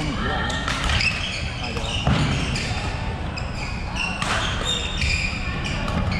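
Badminton rally on a wooden sports-hall court: sharp racket-on-shuttlecock hits and footfalls, with short high squeaks of court shoes, over background chatter.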